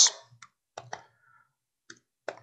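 A few separate key presses on a laptop keyboard, short sharp clicks spaced out as a number is typed in.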